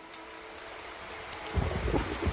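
Steady rain falling, an even hiss, with a low rumble coming in about one and a half seconds in.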